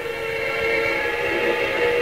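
Background music: a steady held chord of several notes, with no beat.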